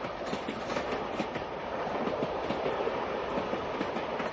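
Sound effect of a train running, heard from inside a railway compartment: a steady rumble with the clickety-clack of wheels over rail joints.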